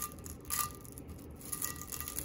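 Plastic cling wrap (saran wrap) crinkling as gloved hands squeeze it around a tumbler, in two short spells of crackling. The crackle is the test that the alcohol ink under the wrap is pretty dry and the wrap is ready to be peeled off.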